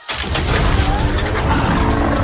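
Loud, dense action sound effects that start abruptly and keep up, with a few pitched sounds mixed in.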